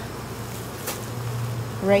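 Steady hum of honeybees buzzing over an open hive, with a single short click about halfway through.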